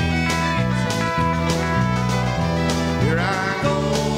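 Live band playing an instrumental passage without vocals: fiddle over electric guitar, bass guitar and a steady drum beat, with a rising slide about three seconds in.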